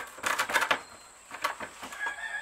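A homemade ulu knife chopping plantain leaves on a wooden cutting board: a quick run of knocks in the first second, then a few more near the end.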